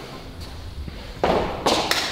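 Two short dull thumps, a second and a half into the clip and just after, over low rumbling handling noise.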